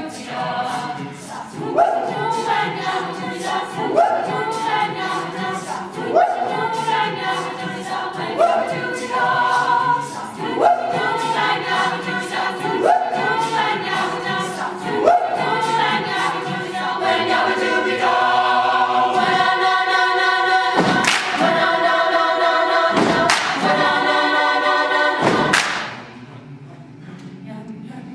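Mixed a cappella choir singing: voices repeatedly swoop upward about every two seconds, then swell into a loud held chord about two-thirds of the way through, marked by a few sharp hits, and cut off suddenly at the end.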